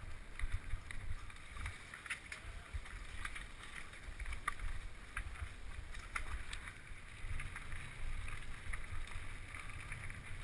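Mountain bike riding down a rough dirt trail, heard from a handlebar-mounted camera: wind rumble on the microphone under frequent small clicks and rattles as the bike jolts over the bumps.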